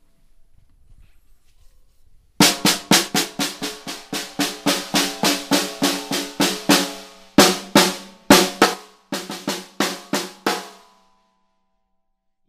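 PDP by DW Platinum 14x5.5-inch maple snare drum with a Remo head, played with sticks. After about two seconds of quiet comes an even run of single strokes, about four a second, then a short break and a few louder, more widely spaced hits, stopping about a second before the end. The head rings with a clear tone after each stroke.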